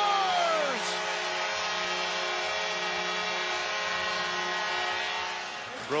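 Arena goal horn sounding a long, steady chord to signal a home goal, with a few of its tones sliding down in pitch in the first second, over crowd cheering; it fades out shortly before the end.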